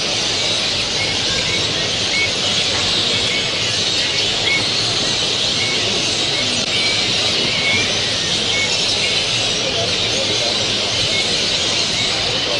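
Steady din of many caged show finches and canaries chirping and singing at once, with short chirps coming through every second or so, over a murmur of people's voices in the hall.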